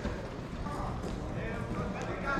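Outdoor street ambience: a steady low rumble with faint voices in the background.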